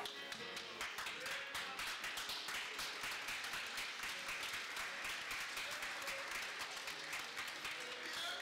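A crowd of guests clapping, many quick claps close together, over faint music in a reverberant hall.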